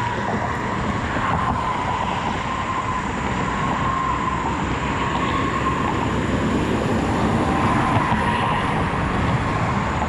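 Steady road traffic on a busy highway bridge: a continuous wash of tyre and engine noise from passing cars and trucks, with a faint steady whine running through it.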